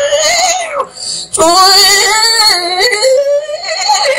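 A man singing long, high-pitched, wavering notes into a microphone over a stage PA, with a short break and a fresh note about a second and a half in.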